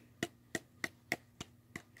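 A steady series of sharp little taps or clicks, evenly spaced at about three a second.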